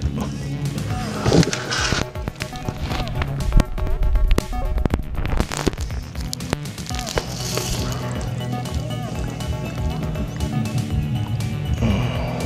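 Background music playing, with scattered clicks and knocks.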